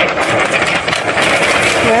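Airless paint sprayer running and spraying, a steady dense hiss with the pump motor underneath.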